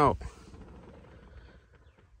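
A man's voice finishing a word, then faint background noise with no distinct sound.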